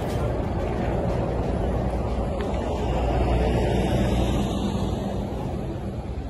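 Steady rumble of vehicle engines, swelling a little in the middle, with the voices of people talking underneath.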